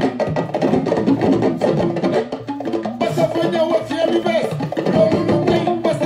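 Music playing, with percussion hits throughout.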